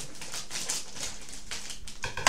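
Plastic dog-treat packet being handled and opened, rustling and crinkling in short, irregular scratchy rustles.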